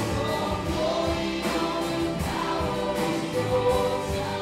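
Live contemporary worship band playing: several voices singing together over electric and acoustic guitars, keyboard and drums.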